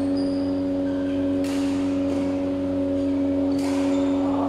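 Badminton hall sound: a steady hum with several overtones, with a sharp racket hit on a shuttlecock about a second and a half in and another near the end.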